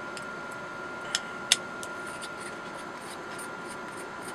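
Two sharp little metal clicks about a second in, then a few faint ticks, as the metal parts of a PCP air rifle's gauge assembly are handled and twisted apart by hand, over a steady faint hum.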